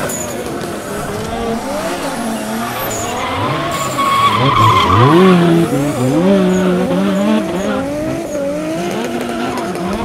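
Radio-controlled drift cars running on a track, their pitch rising and falling as the throttle is worked through the corners, loudest about halfway through.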